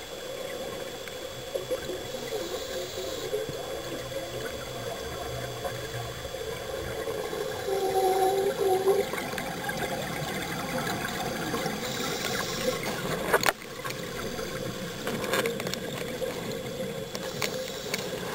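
Underwater noise on a scuba cave dive: a steady wash of water sound with a faint hum. A louder stretch of about a second comes near the middle, and a single sharp click a few seconds later.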